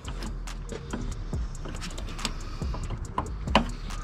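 Scattered light plastic clicks and handling noises from a wiring plug being worked onto the prongs of an LED headlight bulb behind the headlight housing, with a sharper click about three and a half seconds in.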